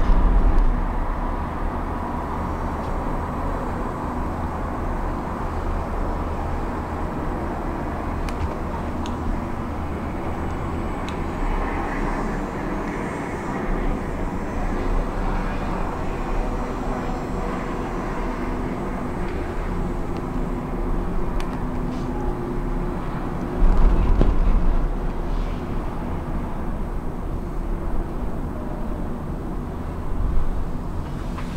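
Steady low running rumble inside a Disney Skyliner gondola cabin travelling along its cable. It swells louder briefly at the start and again about 24 seconds in, with a few faint clicks in between.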